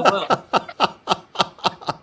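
A person laughing in a run of short, even ha-ha pulses, about four a second, trailing off near the end.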